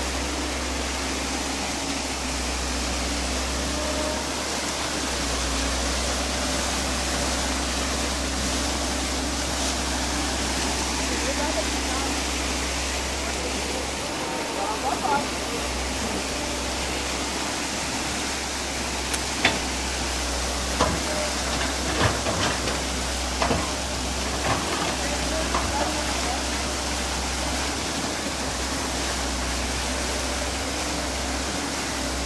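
Muddy water rushing steadily out through a breach in an earthen reservoir wall and spreading over the ground, as a constant rushing noise. In the second half a few short sharp knocks and faint voices come through.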